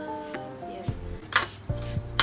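Steel ladle stirring dry roasting bread crumbs in a steel wok, scraping and knocking against the metal, with one sharp loud scrape a little over a second in. Background music plays under it.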